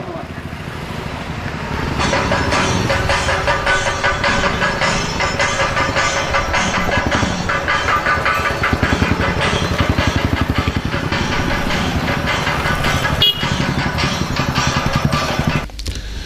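Motorcycles and scooters running as a slow procession rides past, with voices mixed in.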